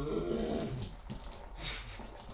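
Gurgling, growl-like throat sounds as a man gulps milk from a glass, then a short spluttering burst near the end as the milk spills back out of his mouth.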